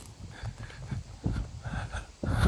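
Footsteps of a person walking on a gravel lane, a few soft, uneven steps.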